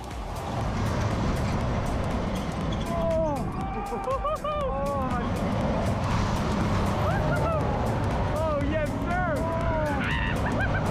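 Onboard a super loop ride as the train goes up around the vertical loop: a steady low rumble of wind and ride machinery that builds in the first second, with riders yelling and whooping in short rising-and-falling cries from about three seconds in.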